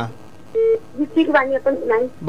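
Speech over a telephone line: a phone-in caller starting to answer. About half a second in there is a short, steady, beep-like tone.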